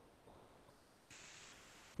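Near silence on a video-call audio feed, with a faint hiss in the second half.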